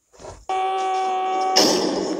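A transition sting in the soundtrack: a steady electronic tone held for about a second, then cut off by a short, loud noisy crash.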